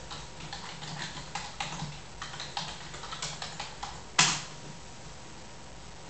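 Laptop keyboard being typed on in a quick, irregular run of key clicks for about four seconds, ending with one louder key strike.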